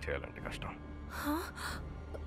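A woman's voice: short breathy utterances and a gasp about a second in, over a low steady hum.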